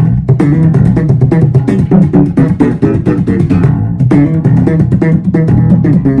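Squier Jazz Bass played slap style through an Orange bass amp: a fast, funky run of thumb-slapped and popped notes, with a dense string of percussive strikes over strong low notes.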